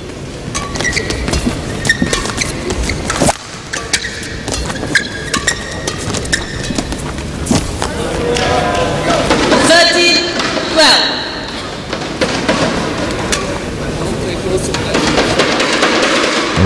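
Badminton singles rally: rackets striking the shuttlecock with sharp cracks and shoes squeaking briefly on the court, with crowd voices rising loudly around the end of the rally, roughly eight to eleven seconds in.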